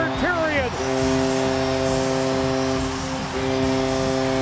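Arena goal horn blowing long, steady blasts after a home goal, with two short breaks between blasts.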